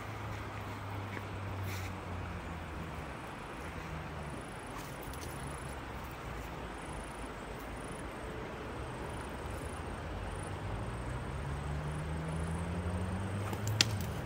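Low, steady drone of a vehicle engine that rises in pitch over the last few seconds. Near the end comes a single sharp snap as a shepherd sling is released.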